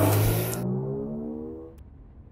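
A motor vehicle's engine accelerating away, its pitch rising steadily as it fades into the distance.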